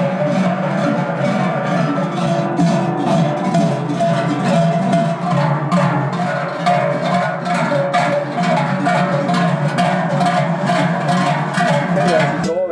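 Many large Swiss sheet-metal cowbells (Trycheln) swung together by walkers, clanging in a steady rhythm, their ringing overlapping into a continuous drone.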